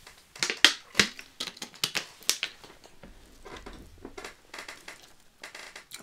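Thin plastic water bottle crinkling and clicking as it is gripped and squeezed while drinking, loudest in the first couple of seconds, followed by softer, scattered ticks of the bottle being set down and a tarot deck being handled.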